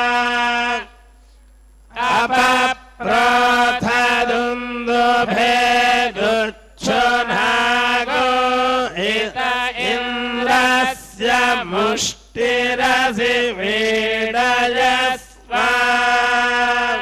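Vedic mantras chanted in Sanskrit, in long phrases held on a few steady notes with small pitch turns, broken by breath pauses, one of about a second near the start.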